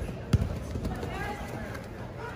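A heavy thud of a body slamming onto a foam grappling mat in a takedown, about a third of a second in, with a softer knock just before it, over the murmur of voices in the hall.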